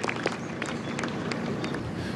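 Scattered light applause from golf spectators for an approach shot that has finished close to the pin: irregular single claps over a low outdoor background.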